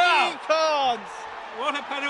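Excited male speech: a commentator's falling exclamations as a penalty is missed.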